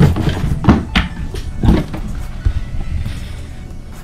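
Cardboard box and its insert being handled and pulled apart, giving several sharp knocks and rustles that thin out near the end, over background music.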